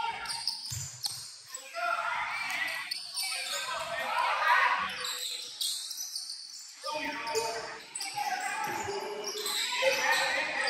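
Basketball being dribbled on a hardwood gym floor during play, its bounces echoing in the large hall, among short squeaks and players' and spectators' voices.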